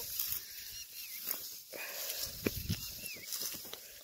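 Dry wheat stalks rustling and snapping as they are cut by hand with a sickle, with a few sharp crunching clicks through the middle.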